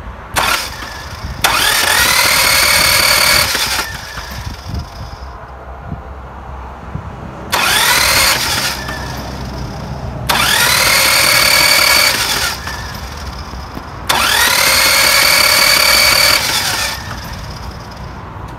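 Toyota Tiger's 5L four-cylinder diesel being cranked on the starter in four or five bursts of one to three seconds, each with a whine that rises and then holds. The engine turns over freely and never fires, spinning with no compression: the sign of a broken timing belt, as the owner suspects.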